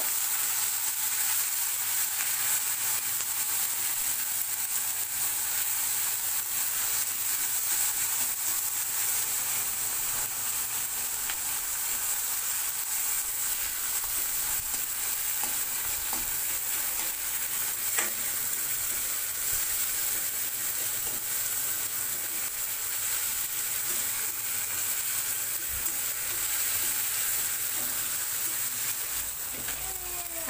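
Chopped onion and tomato sizzling in hot oil in a kadai, stirred with a steel spatula: a steady sizzle with occasional scrapes of the spatula, and one sharp click about eighteen seconds in.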